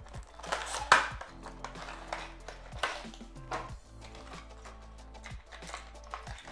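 Crackling and clicking of a clear plastic clamshell and cardboard box as a fishing lure is slid out and unpacked, a string of sharp crinkles with the loudest about a second in, over steady background music.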